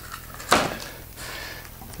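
A blade working along the edge of a cardboard shipping box, cutting the packing tape and cardboard: one sharp rasp about half a second in, then fainter scraping.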